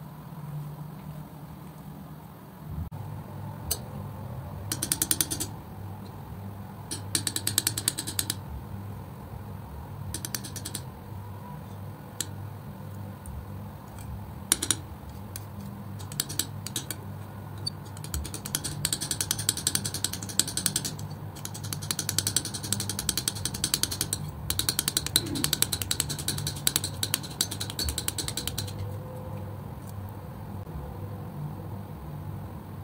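Metal palette knife working thick wet acrylic paint, making fast sticky clicking and scraping as it mixes and spreads. It comes in short bouts at first, then runs almost without a break through the second half and stops shortly before the end, over a steady low hum.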